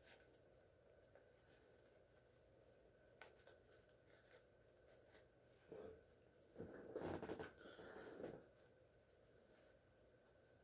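Faint rustling and rubbing of twine and a cloth bandana as they are untied and unwrapped by hand, loudest for a couple of seconds past the middle.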